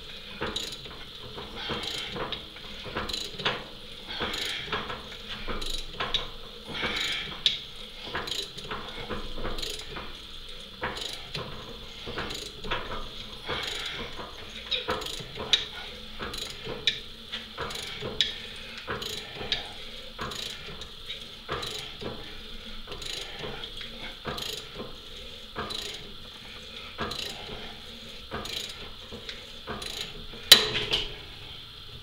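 Ratcheting tap handle clicking as a tap is worked by hand, stroke after stroke, cutting a thread in a steel part. The clicks come roughly once a second.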